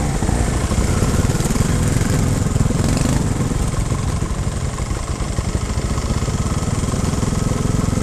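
Trials motorcycle engine idling steadily at close range, an even rapid beat of firing pulses.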